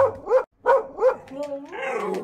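Miniature dachshund giving four quick yelping barks, then a longer wavering howl as it sings along.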